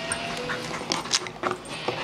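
A dog mouthing and picking up a pickle jar lid: a few scattered short clicks and scrapes of teeth on the lid, clustered about a second in.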